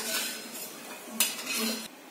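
Metal spoon scraping and clinking against a steel kadhai, in two short bursts: one at the start and one just over a second in.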